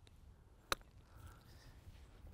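A golf iron striking the ball on a short chip shot: one sharp click a little under a second in, over a low rumble.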